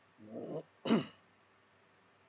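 A person clears their throat, then gives one short, sharp cough.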